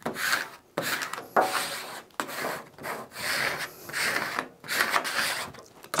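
Plastic squeegee dragged in repeated strokes over wet transfer tape and vinyl lettering on a magnet sheet. Each stroke is a rubbing scrape a little under a second long, pressing the water out from under the vinyl.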